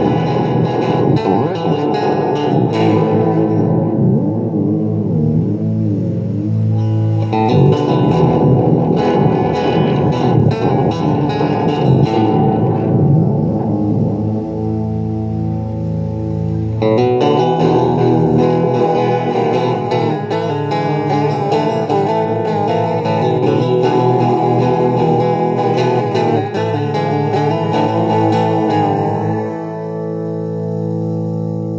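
Electric guitar played through the Gonk! fuzz pedal, a Clari(not) clone, switched on: fuzzy held chords and notes, with the playing changing about seven and again about seventeen seconds in.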